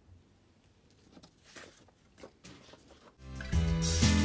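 Faint rustles and light taps of paper and card being handled on a desk, then background music comes in suddenly a little after three seconds in and becomes the loudest sound.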